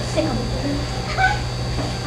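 A child's voice, short and indistinct, on a worn 1970s videotape recording, over a steady low hum and a thin high whine from the tape's audio.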